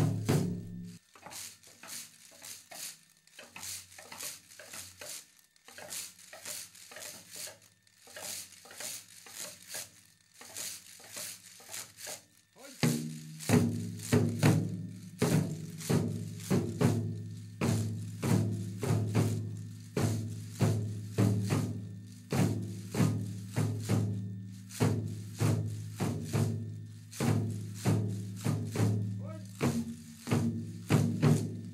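Dengaku music: binzasara (strung wooden-slat clappers) clacking in a steady rhythm, joined about 13 seconds in by two waist-worn drums, whose regular strokes, a little faster than one a second, become the loudest sound.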